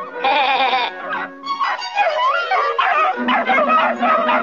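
A pack of cartoon hunting hounds baying and yelping with wavering, warbling calls over the orchestral cartoon score.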